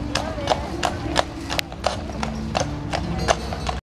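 A carriage horse's hooves clip-clopping on the pavement at a steady pace, about three strikes a second, as the horse-drawn carriage passes. The sound cuts off just before the end.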